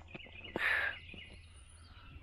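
Faint birdsong in the open air, with a short rustle about half a second in.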